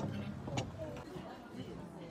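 Faint voices in the background, with two short sharp clicks, one at the very start and one about half a second later.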